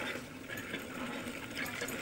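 Hand pump being worked by its lever, with water splashing steadily from the spout into a container below.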